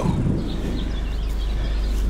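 Car subwoofer in a ported enclosure playing a 25 Hz test tone from a phone tone generator, a steady low hum. The tone is below the box's port tuning, so the cone is making big excursions. Rustling from the camera being moved sits over it, most of all at the start.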